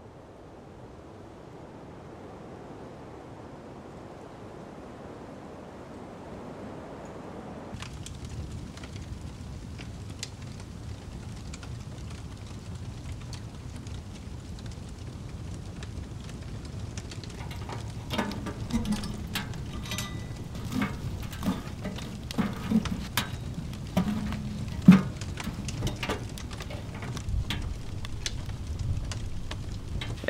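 A soft rushing of wind fades in, then about eight seconds in gives way to a wood fire burning in a small wood-burning tent stove, with a low steady rumble and, from about the middle on, frequent sharp crackles and pops.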